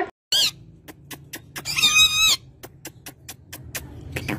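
Rose-ringed parakeet (Indian ringneck) squawking: a short call near the start, then a longer, harsh call about two seconds in, with scattered short clicks in between.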